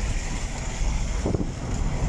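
Steady low rumble of a car driving along a road, with wind buffeting the microphone through an open side window.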